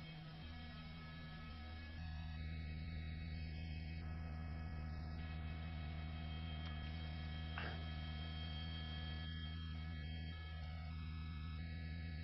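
A steady low hum with faint steady higher tones over it, and one faint tick about halfway through.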